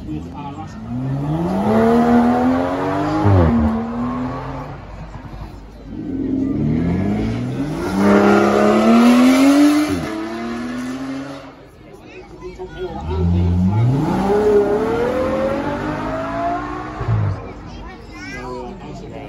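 Car engines revving hard as cars accelerate along the course: three runs, each climbing in pitch and then dropping sharply.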